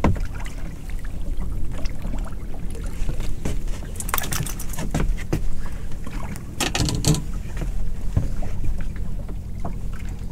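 Water sloshing against a small boat's hull over a steady low hum, with two louder bursts of splashing about four and seven seconds in as a hooked pollock is brought to the surface beside the boat.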